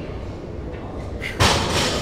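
A heavy thud with a short crash of gym equipment about one and a half seconds in, over steady background noise from a busy gym.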